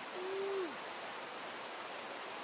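Steady rush of the river, with a single low hoot near the start, held level for about half a second and then falling away in pitch.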